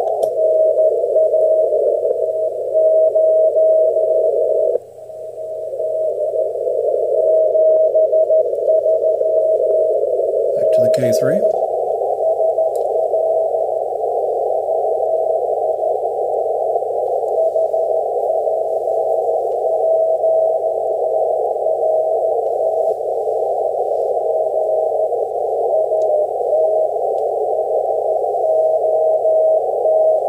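Shortwave receiver audio of a weak CW (Morse) beacon: the keyed tone of dots and dashes sits just above a band of static squeezed through a narrow 450 Hz filter. The hiss briefly drops out about five seconds in, and one short spoken word comes near the middle.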